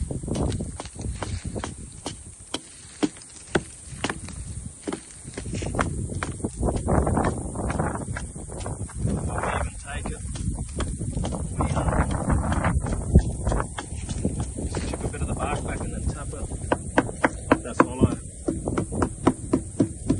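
Small hatchet chopping into a tree trunk in repeated sharp strikes, with bark tearing and stripping between them. Near the end the chops come faster, about two or three a second.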